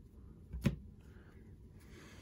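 A hand-held stack of baseball cards being flipped through, the cards faintly handled, with one sharp click about two-thirds of a second in.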